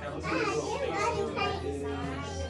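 Children's voices chattering over one another, with no clear words.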